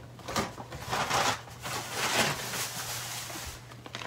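A bag crinkling and rustling in irregular bursts as it is opened and handled and fruit is taken out of it.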